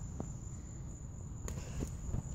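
Steady high-pitched insect chirring, with a low rumble on the microphone and a few faint clicks.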